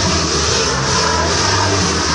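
Large children's choir singing, with steady low notes held underneath.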